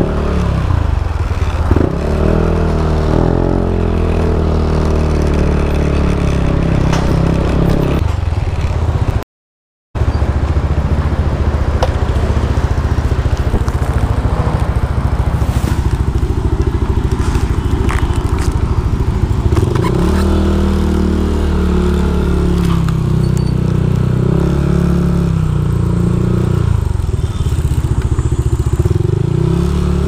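Motorcycle engine running as it is ridden at low speed, with a heavy low rumble and noise on the microphone; the engine note rises and falls several times in the second half. The sound cuts out completely for about half a second around nine seconds in.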